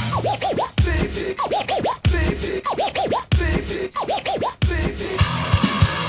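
Funk-punk band recording in a sparse breakdown: clusters of quick rising-and-falling pitch sweeps over a low drum hit, repeating about every second and a half. The full band comes back in near the end.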